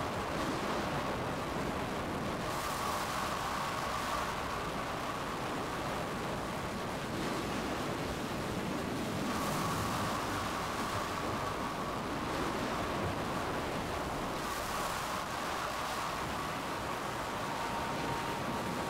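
Steady roar of tornado wind from storm footage, an even rushing noise with no break. A faint steady tone runs under it at times.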